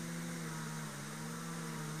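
Steady low drone of a distant engine, its pitch wavering slightly, over a faint hiss.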